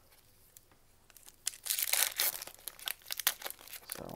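Foil wrapper of a Magic: The Gathering booster pack crinkling and tearing as it is opened, starting about a second in, a dense run of crackles.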